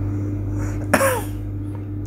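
A man gives one short cough, a throat-clearing sound with a falling voiced tail, about a second in, over a steady low hum.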